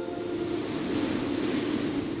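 A soft, steady whoosh of noise that swells gently, a transition sound effect closing a logo intro, as the piano notes of the intro music die away.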